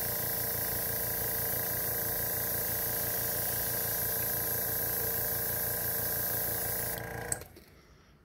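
Iwata airbrush spraying paint onto a crankbait, a steady hiss of air, with a steady motor hum beneath it; the hiss cuts off about seven seconds in and the hum stops a moment later.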